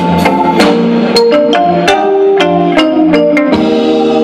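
Live band playing amplified through a stage PA: electric guitars, drum kit and percussion over a steady beat.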